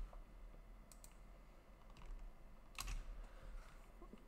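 A few faint, separate clicks of a computer keyboard and mouse as text is pasted into a web page, the loudest a little under three seconds in.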